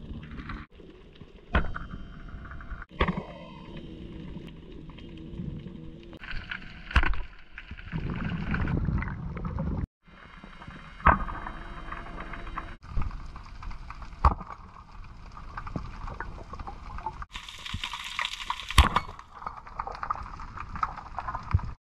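Muffled underwater noise of water moving past a spearfisher's camera, changing abruptly at several cuts, with a sharp knock every few seconds.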